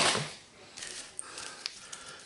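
Faint rustling of a foil trading-card pack being picked up and handled, with a couple of light clicks.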